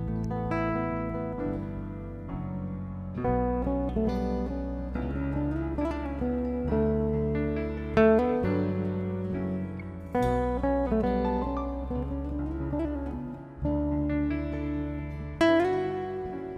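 Live band playing an instrumental passage led by a nylon-string classical guitar picking melody notes over sustained bass notes, with a new chord every second or two.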